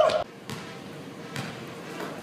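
A basketball bouncing on a hardwood gym floor, two sharp bounces about a second apart in a large hall, after a brief shout that cuts off at the very start.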